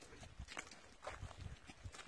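Faint footsteps on a dirt path strewn with dry leaves and twigs, soft thumps with light crunching at a walking pace.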